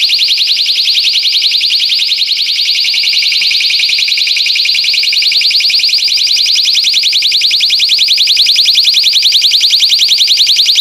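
Personal safety alarm sounding with its pin pulled, out in the open with no insulation around it: a very loud, shrill, rapidly pulsing high tone, measured at about 105 decibels.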